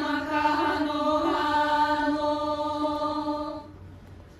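Hawaiian chant for a hula kahiko, the voice holding one steady drawn-out pitch and fading out about three and a half seconds in.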